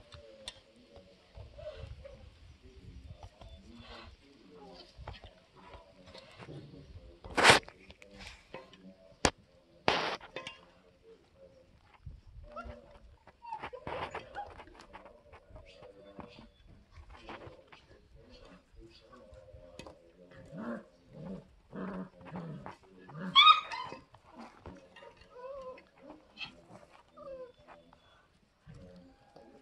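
Five-week-old German Shepherd puppies playing rough, with many short growls and whines. Two sharp knocks come early on, and one loud, high yip comes about two-thirds of the way through.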